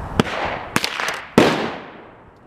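Three gunshots from other shooters on the firing range, each a sharp report with a trailing echo. The last, about one and a half seconds in, is the loudest.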